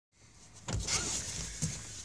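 Handling noise inside a car cabin: a faint rustle with a knock, then a second knock a second later.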